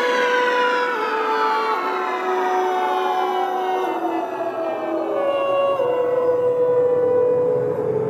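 Dark psytrance electronic music without drums: a synth tone with many overtones slides slowly down in pitch across the whole stretch, over a held synth line that steps down between notes. The track is near its end.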